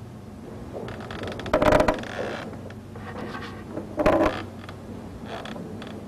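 Intermittent mechanical creaks and clatter, with two louder squealing creaks, one about a second and a half in and one about four seconds in.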